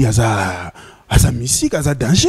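Speech only: a man talking into a handheld microphone in two short phrases, with a brief pause about a second in.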